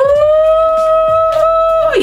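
A woman's voice holding one long, steady 'ooh' note, sliding up slightly at the start and cutting off near the end.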